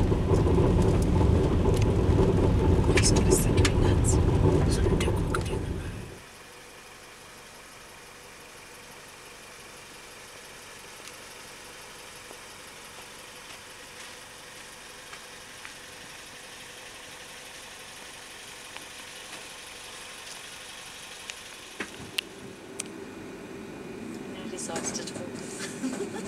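Car driving on a road, a steady low road and engine rumble heard from inside the car, which drops away sharply about six seconds in. After that only a faint steady hiss remains, with a few light ticks near the end.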